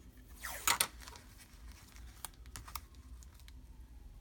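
Paper washi tape being pulled off its roll with a brief ripping sound about half a second in, followed by light clicks and taps as the tape is handled and pressed onto the page. A faint distant siren sounds underneath.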